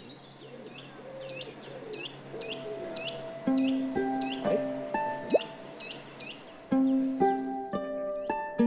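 Small birds chirping in a steady string of short, hooked calls, about two a second. Background music of held, clearly struck notes comes in about three and a half seconds in and is the loudest sound from then on.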